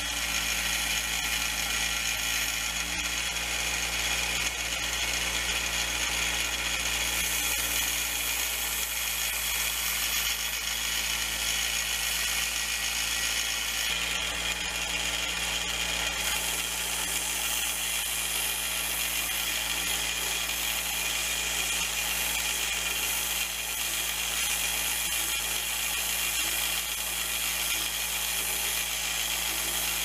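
Belt grinder running steadily with a motor hum while steel is ground on the belt, smoothing the rough casting of a hatchet/hammer head. The high grinding hiss strengthens and eases as the steel is pressed and moved across the belt.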